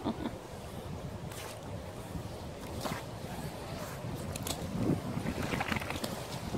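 Steady low wind rumble on the microphone, with water sloshing and dripping near the end as a fishing magnet on a rope is pulled up out of the canal.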